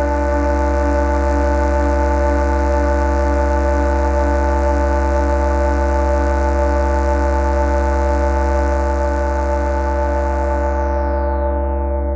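Electronic live-set music with no beat: a sustained synthesizer chord over a deep bass drone, one mid-range note pulsing evenly, and a layer of high hiss. About ten seconds in, a filter sweeps down, cutting away the highs as the sound begins to fade.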